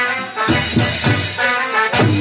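Live band music from an electronic keyboard through loudspeakers, with a steady beat and a rattling shaker-like percussion. The bass drops out briefly twice.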